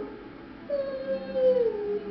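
A woman singing a held "ee" vowel that glides down a third, from a higher note to a lower one, as a 3-to-1 vocal glide exercise. It begins about two-thirds of a second in.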